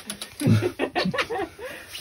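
Indistinct, low voices talking, with a few faint clicks near the start.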